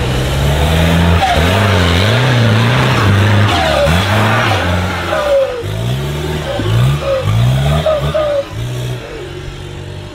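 Modified off-road 4x4 competition truck's engine revving hard under load on a loose dirt climb, its pitch repeatedly rising and falling, with a run of quick throttle blips in the second half before the engine sound drops away near the end.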